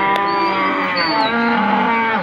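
One of the cattle mooing: a single long, loud call that drops in pitch as it ends.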